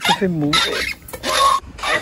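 Hand floor pump inflating a car tyre: a short falling squeal at the start, then bursts of air hiss from the pump strokes about a second in and again near the end.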